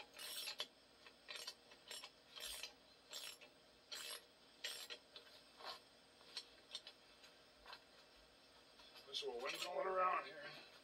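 Faint, short scraping rasps of metal, one every half second to second, as the threaded bolt of a brake drum puller is turned against the hub.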